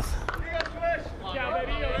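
Faint voices calling and chattering around a ballpark, picked up by the field microphones under a low steady rumble of crowd and open-air noise.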